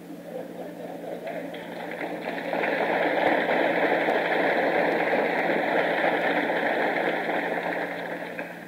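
Audience applause, swelling over the first two or three seconds, holding, then dying away near the end. It is heard on an old cassette recording with a steady low hum underneath.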